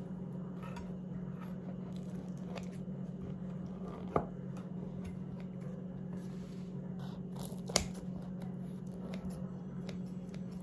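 Kitchen scissors cutting through the crisp crust and soft crumb of a baked focaccia: scattered snips and crunches, with two sharp clicks about four and eight seconds in. A steady low hum runs underneath.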